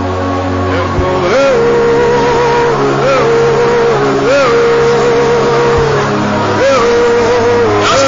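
Keyboard holding long sustained chords, changing chord about a second in, with short rising-and-falling slides leading into new held notes every second or two.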